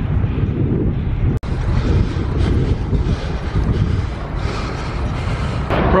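Wind buffeting the microphone of a riding cyclist's camera, a loud, rough, low rumble. The sound cuts out for an instant about a second and a half in.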